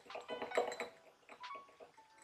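A small wire whisk beating a liquid in a small glass bowl: quick, irregular clinks and scrapes of metal against glass, several strokes a second, fairly quiet.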